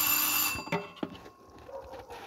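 A loud sizzling hiss as food hits a hot metal pot, with the pot ringing through it; it dies away within about a second, and a fainter hiss comes back near the end.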